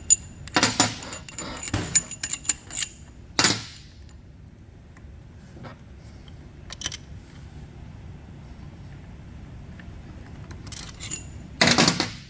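Loose steel bolts clinking and rattling against each other and a metal workbench as they are taken out of a hydraulic pump's auxiliary pad cover. A flurry of ringing clinks comes first, with a harder knock about three and a half seconds in and another near the end.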